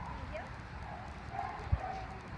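Faint, indistinct talking in the background, with a few low thumps, the sharpest one near the end.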